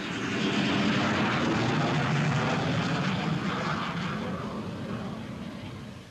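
Jet noise of a T-38 Talon trainer's twin turbojets on its takeoff run. It is a loud, steady rushing sound that fades away over the last couple of seconds as the jet lifts off and moves off.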